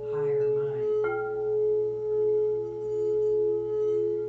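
Singing bowl ringing with a steady, wavering hum, struck again about a second in so that higher overtones ring out over it, as part of a sound healing.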